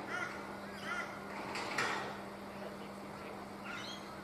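Bird calls outdoors: a few short, arching cries in the first second, then a brief louder, noisier burst just before two seconds in. A steady low hum runs underneath.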